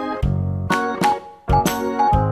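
Instrumental background music: short, sharply struck pitched notes, about two a second, over a bass line.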